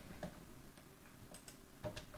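A few faint, separate clicks from operating a computer, the loudest near the end.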